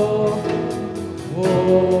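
Live worship music: a band with drums, electric guitar and keyboard behind voices singing a held "oh" refrain. About a second and a half in, the voices slide up to a new note.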